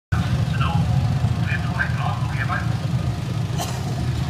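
Film soundtrack playing to a street audience over loudspeakers: a voice speaking over a heavy, steady low rumble, with one sharp click near the end.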